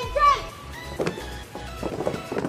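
A long, drawn-out shouted parade command ends just after the start, its pitch falling away. A single sharp stamp follows about a second in, then a ragged run of stamps and shuffles near the end as a squad of cadets moves in drill.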